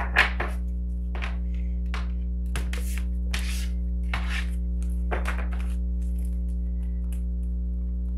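A deck of oracle cards handled and shuffled by hand: several short papery riffles and slides at uneven intervals, mostly in the first five seconds. Under them runs a steady, low droning music bed.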